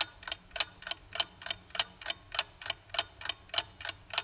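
Clock-ticking sound effect marking a time skip: an even, steady ticking of several ticks a second.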